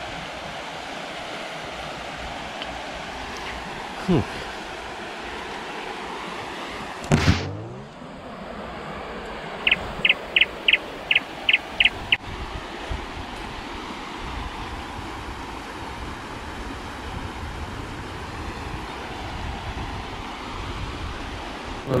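River water rushing steadily over a shallow stony riffle. About seven seconds in comes a short whoosh, and from about ten to twelve seconds a run of about eight short, evenly spaced high chirps, an added cartoon sound effect.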